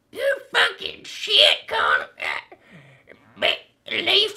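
A man's voice in a put-on character voice, speaking in short choppy bursts with a quieter stretch in the second half, not clear enough to come out as words.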